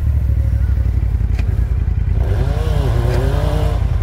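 A side-by-side engine idling close by with a deep, steady rumble. From about two seconds in, a Yamaha YXZ1000R's engine revs up and falls back twice during a hill-climb attempt.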